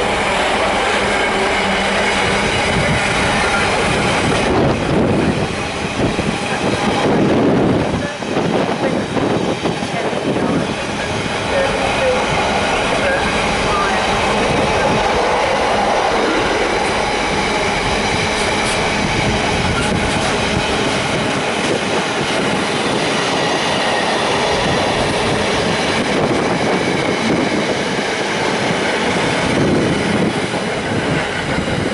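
A container freight train of loaded flat wagons passing close by at speed, hauled by a Class 66 diesel. Its wheels keep up a continuous rumble and clatter over the rails and pointwork, with a thin high wheel squeal at times.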